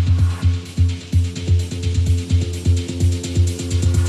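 Electronic dance music from a live DJ set: a steady four-on-the-floor kick drum with ticking hi-hats, a sustained synth chord coming in about half a second in, and the high ticking getting quicker toward the end.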